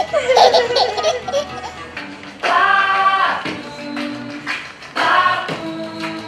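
A baby laughing in short giggles over background music for about the first second and a half. Then, about two seconds in, the music carries on alone, with a singing voice holding long notes.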